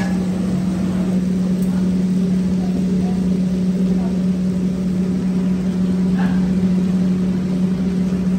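A steady low-pitched machine hum at an even level, with a faint short sound about six seconds in.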